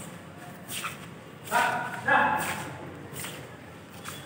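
A person's voice in two short bursts of talk about halfway through, over shuffling footsteps on a stone floor.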